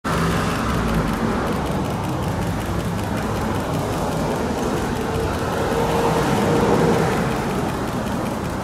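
Road traffic on a city street: cars passing, a steady rumble of engines and tyres.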